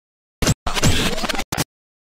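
Logo-intro sound effect of stuttering scratch-like bursts: three sharp-edged bursts with dead silence cut between them, the middle one longest, with falling sweeps.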